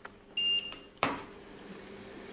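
A digital scale gives a single short, high electronic beep as it is switched on, ready for weighing. About half a second later there is a sharp click.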